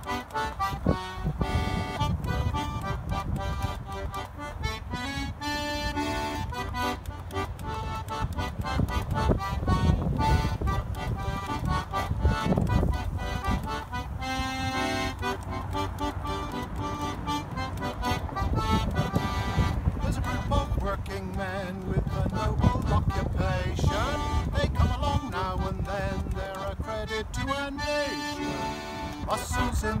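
Button accordion playing a folk song tune on its own, melody over chords at a steady rhythm; a man's voice begins singing right at the end.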